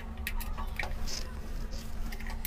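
Light plastic clicks and scrapes from a bayonet bulb holder being handled and pulled from its wall base, with a brief hiss about a second in, over a steady low hum.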